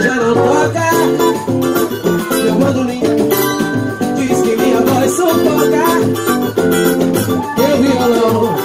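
Live samba music: acoustic guitar and cavaquinho strummed in a steady rhythm, with a woman singing over them.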